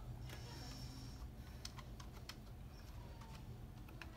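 Typing a password on a computer keyboard: a run of faint, irregularly spaced key clicks.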